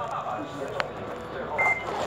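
Indistinct background voices, with a sharp click a little under a second in and a short, high electronic beep near the end, the loudest sound.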